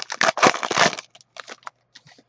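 Trading cards and a foil pack wrapper being handled: about a second of dense crinkling and rustling, then a few light clicks as the cards are shuffled.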